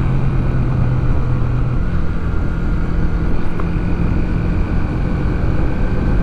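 Yamaha YB125SP's single-cylinder 125 cc engine running steadily while under way, with wind rushing on the bike-mounted microphone. Its tone steps up in pitch about two seconds in.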